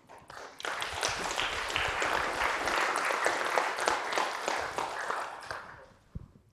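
Audience applauding: many hands clapping, rising within the first second, holding steady, then fading away near the end.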